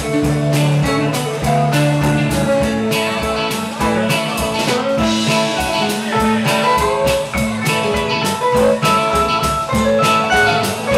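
Live rock band playing an instrumental passage: electric guitar lines over bass and a drum kit keeping a steady beat.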